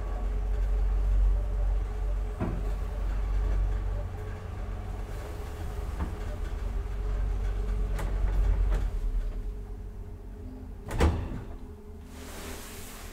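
1995 Deve Schindler hydraulic elevator travelling upward: a steady low hum from the car and drive, with a few light clicks along the way. The hum dies down near the end, and a loud clunk comes as the car stops at the floor.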